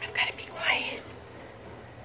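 A woman's voice, a couple of short breathy, whispered words in the first second, then quieter.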